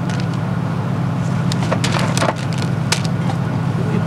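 Paper and cardboard food packaging being handled, giving a few sharp crackles and rustles over a steady low hum.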